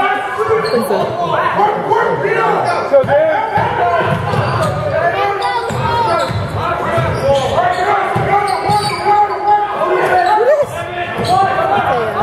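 A basketball being dribbled on a hardwood gym floor during play, with voices and spectator chatter echoing around the hall.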